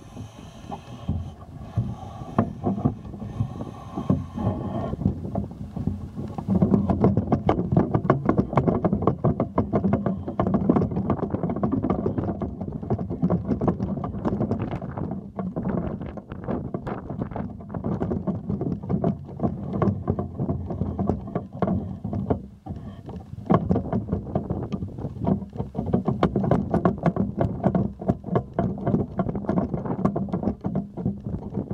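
Wind buffeting the microphone of a camera raised on a pole, with rattling handling noise from the pole, as an irregular, steady rumble and crackle.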